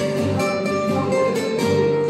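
Two acoustic guitars, one nylon-string classical and one steel-string, playing an instrumental passage together without voice.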